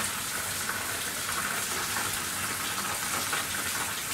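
A steady, even hiss of background noise, with no clear events in it.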